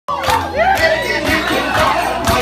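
A crowd of people shouting and cheering together over music with a steady low bass line.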